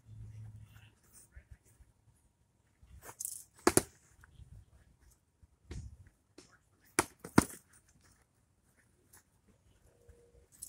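Foam-padded LARP swords striking shields and bodies in a sparring bout: a few sharp smacks, the loudest a pair about seven seconds in, one of the blows landing on a leg. Faint scuffing of feet on grass in between.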